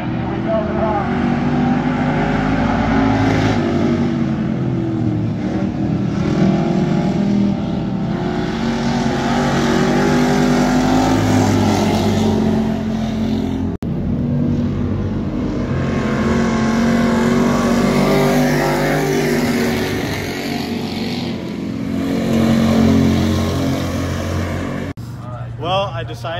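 Dirt-track hobby stock race cars running laps in a race, several engines' tones overlapping and rising and falling as they go around the oval. The sound breaks off abruptly about halfway through and picks up again at once.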